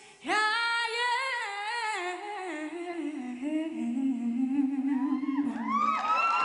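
A boy's high solo singing voice comes in just after the start with a slow phrase that steps down in pitch and settles on a long held low note. High gliding sounds join in near the end.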